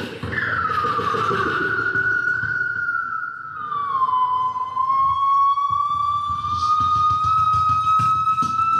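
Beatbox freestyle: a high, siren-like held vocal tone that slides down, wavers, dips again midway and then slowly rises, over low beatboxed bass pulses.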